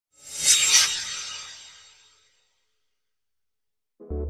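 Whoosh sound effect for an animated logo intro: one burst of hissy, high-pitched noise that swells to a peak about half a second in, then fades away over the next second and a half.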